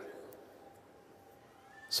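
A pause in a man's amplified Urdu lecture: his voice dies away into the hall's reverberation, then faint room noise with a faint steady hum. His speech starts again right at the end.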